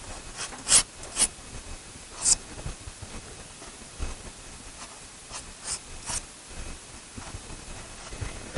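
Pastel stick scratching across sanded pastel paper in short, irregularly spaced strokes, a few of them sharper and louder than the rest.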